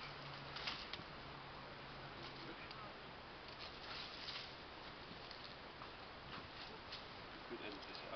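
Faint outdoor background with light, scattered rustles and scrapes of garden hoses being handled and pulled over grass. A faint low hum fades out after the first couple of seconds.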